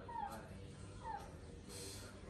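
A pug in a plastic cone collar whimpering twice: two short, high whines that fall in pitch, about a second apart. A brief rustle comes near the end.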